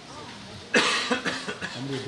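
A man coughs once, sharply and loudly, about three-quarters of a second in, followed by throat sounds and the start of his speech near the end.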